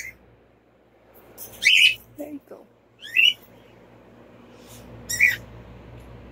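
Three short, high-pitched calls from a pet animal, spaced about one and a half to two seconds apart, with a fainter, lower short call between the first two.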